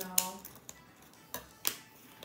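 Scissors snipping at a plastic snack pouch, hard to cut open: three sharp snips, the loudest just after the start and two more about a second and a half in.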